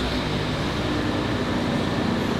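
Smart fortwo's small turbocharged three-cylinder engine idling steadily just after being started, heard from inside the cabin.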